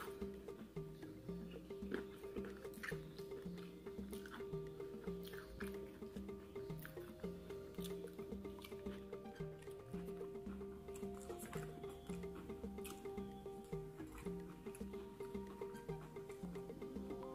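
Quiet background music, a repeating low bass figure under a held tone, with scattered crisp clicks and crunches of fried fish being chewed close to the microphone.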